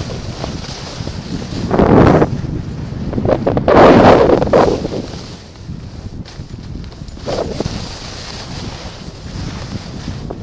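Wind rushing over the camera's microphone while skiing downhill, mixed with skis hissing over soft snow, swelling louder about two seconds in and again around four seconds.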